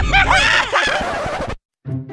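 A group of men laughing hard, in rapid high-pitched bursts, cut off suddenly about a second and a half in.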